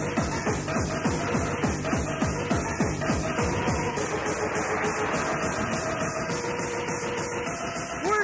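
Fast electronic rave dance music from a live DJ set, driven by a rapid bass drum whose hits fall in pitch. About three seconds in the drum drops out, leaving held synth notes.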